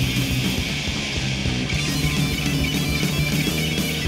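A heavy-metal band playing live: electric guitars over drums.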